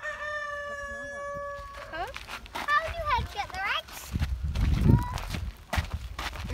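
Rooster crowing: the long held final note of the crow, which ends in a slur about two seconds in.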